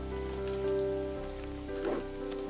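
Background instrumental music with long held notes that change every second or so, over a soft, even, rain-like hiss.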